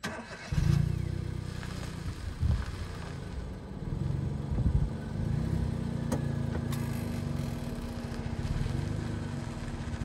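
Vehicle engine idling, cutting in suddenly about half a second in, then running steadily with a low hum.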